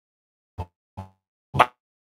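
Three short clipped blips of a man's voice, the last one loudest, each broken off into dead silence as the audio cuts in and out.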